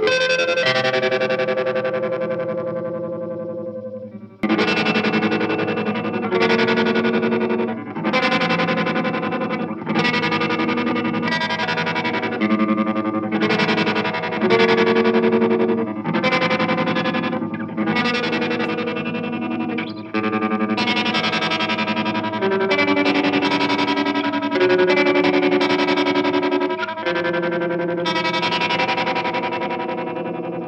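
Electric guitar played through an Electro-Harmonix Stereo Pulsar tremolo pedal into a Jet City amp: chords strummed and left to ring, a new one every second or two, with the volume pulsing quickly under the tremolo. It runs through a single amp in mono, so the pedal's stereo effect is not heard.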